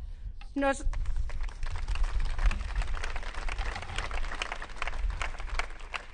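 An audience applauding, many hands clapping together. The clapping starts about a second in, right after a last word from the speaker, and thins out near the end.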